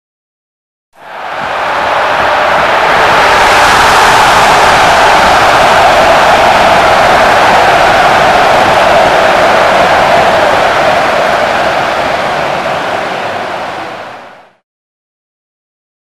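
A loud, steady rushing noise added as an intro sound effect. It fades in about a second in, holds, and fades out shortly before the end.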